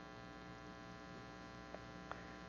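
Faint, steady electrical mains hum with many even overtones, and a small faint click near the end.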